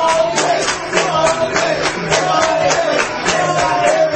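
Music with a steady beat of about three hits a second under a held melody line.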